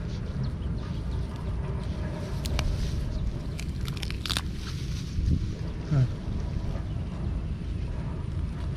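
Grass and wet mud rustling and crunching under a hand clearing the mouth of an eel hole, with a few sharp crackles around the middle, over a steady low rumble.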